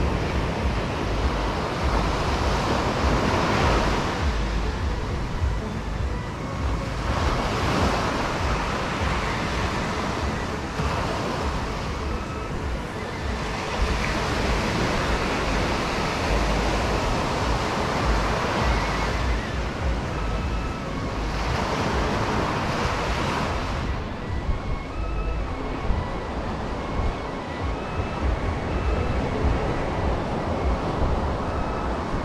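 Surf breaking on a sandy shore, the wash swelling and easing every few seconds, with wind rumbling on the microphone.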